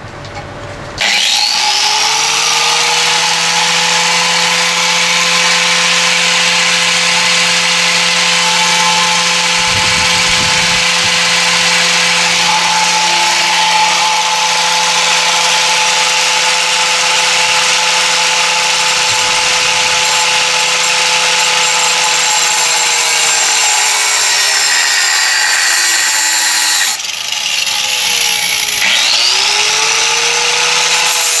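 Handheld grinder with a cut-off wheel spinning up about a second in and cutting through a metal tube: a steady whine over a gritty cutting noise. Near the end the wheel winds down with falling pitch, then spins up again.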